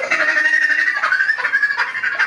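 A high-pitched voice babbling in short repeated syllables.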